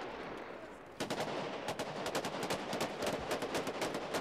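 Automatic gunfire: a dense, rapid run of shots breaking out about a second in and keeping up, over a steady haze of noise.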